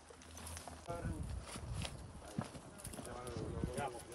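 People's voices calling out over the scattered knocks and footsteps of firefighters moving with their gear over rough ground.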